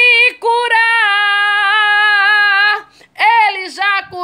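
A woman singing a gospel song unaccompanied: a short note, then one long held note lasting about two seconds, a brief breath, and a new phrase starting near the end.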